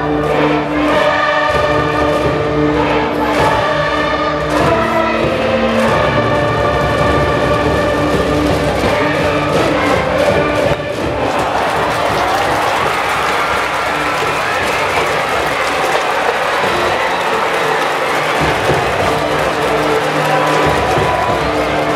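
High-school baseball cheering section: a brass band plays a cheer tune in held, steady notes with a drum beat while students sing along. About halfway through the band drops out and the crowd of voices carries on singing and cheering.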